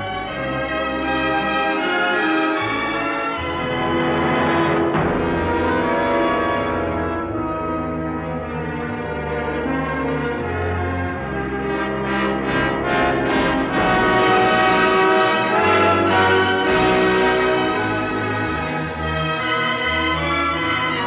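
Orchestral theme music led by brass, with trombones and horns playing broad sustained chords. About twelve seconds in, the band plays a run of short, repeated accented chords, then the music settles back into held chords.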